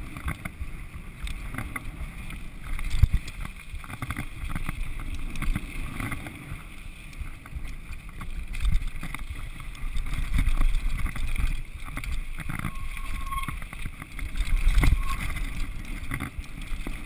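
Downhill mountain bike rattling and clattering over a rough dirt and gravel trail, with tyres crunching and wind buffeting the microphone at speed. Sharper knocks come as the bike hits bumps, loudest about three seconds in and again near the end.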